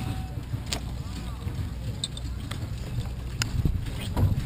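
A harnessed horse team standing hitched, with a few short sharp clicks from the horses and their gear over a steady low rumble, and faint distant voices.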